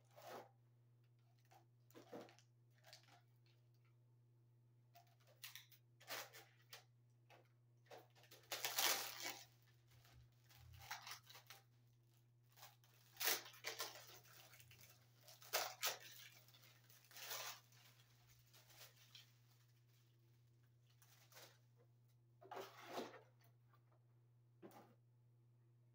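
Cardboard box and plastic packaging being handled and torn open in irregular rustling bursts as a slim round LED panel light is unpacked. A faint low steady hum runs underneath.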